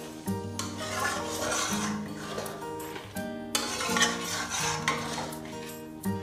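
Metal spatula stirring and scraping through the gourd pieces and thin curry in a kadai, with a short pause about halfway.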